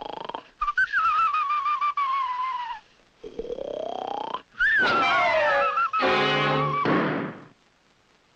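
Comic cartoon score made of sliding, wavering tones: a wobbling tone drifts slowly down, a glide climbs upward, then a wobbly falling phrase over a buzzy held note. It stops suddenly about half a second before the end.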